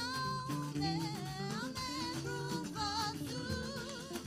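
Live church band playing an upbeat praise song: singers over electric guitar and a steady beat.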